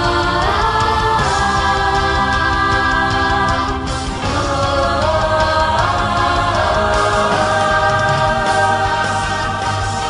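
Multitracked female voice singing long held notes without words in choir-like harmony over a symphonic metal backing track. The chord changes about a second in and again around four to five seconds.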